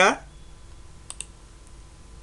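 A faint computer mouse click about a second in, selecting an object on screen, over low room noise; a spoken word ends right at the start.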